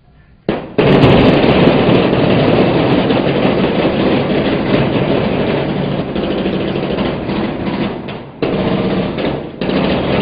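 Loud, rapid gunfire: dense bursts of blank-firing automatic weapons on a battle set. It starts suddenly about half a second in and breaks off briefly twice near the end.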